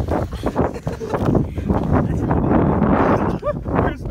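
Boots crunching and scuffing in snow, a run of short steps, then a louder rustling, scraping stretch. A short voice sound comes near the end.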